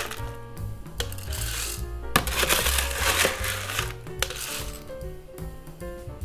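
Ice cubes being scooped from an ice bin and rattling into a glass in several clattering pours about a second apart, over background music with a steady bass line.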